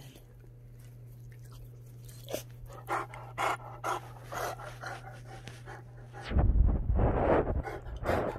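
Newfoundland dog panting in short, uneven breaths close to the microphone. From about six seconds in, a louder rough rubbing noise takes over as the microphone is pressed into the dog's fur.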